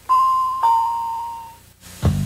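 Two-note electronic chime in a ding-dong pattern: a higher note, then a slightly lower one about half a second in, ringing out and fading by about a second and a half in.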